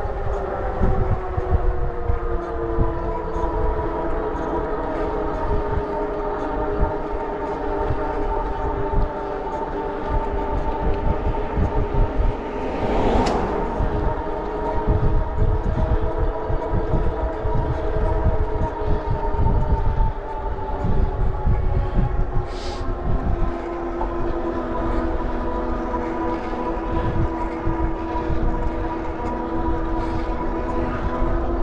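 Motorcycle engine running at a steady cruise, with wind buffeting the microphone. The engine note falls a little in the second half, and there is a brief rushing burst about halfway through.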